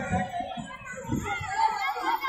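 A crowd of children chattering and calling out as they play, many voices overlapping with no single speaker standing out.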